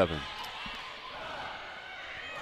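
Steady arena crowd noise during a volleyball rally, with a faint ball contact about two-thirds of a second in.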